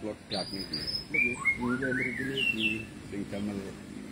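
Small birds chirping and whistling, a string of short rising and falling notes, busiest in the first three seconds, with low voices talking underneath.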